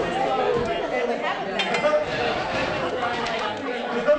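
Many people chattering at once in a large room: overlapping conversations from an audience milling before a session starts.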